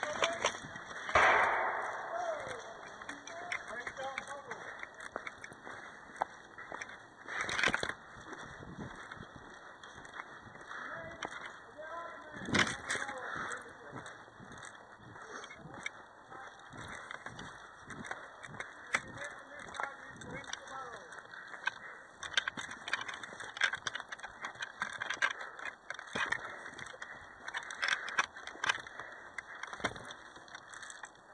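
Knit sleeve fabric rubbing and brushing against a body-worn camera's microphone, with many small scuffs and clicks and three louder knocks, about a second in, near 8 s and near 13 s, over faint voices.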